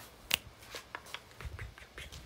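A sharp click about a third of a second in, then soft rustling and a scatter of faint clicks from a person moving about.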